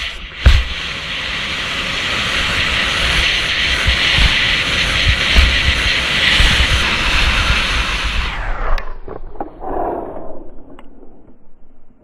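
Wind roaring over a skier's action-camera microphone at speed, with heavy gusty buffeting and the rush of skis over snow. A sharp thump comes about half a second in as the skier lands a jump. The roar cuts off abruptly about eight and a half seconds in, leaving quieter scraping.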